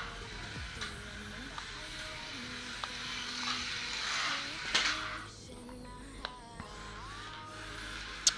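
Propellers and small motors of a toy quadcopter running in hovercraft mode as it skims across a tiled floor, a thin whirring hiss. The whir swells about four seconds in, then drops off soon after five as the throttle is let go.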